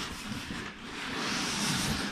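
A fabric backpack rubbing and sliding against foam packaging as it is lifted out of a cardboard box: a soft rustling hiss that grows louder about a second in.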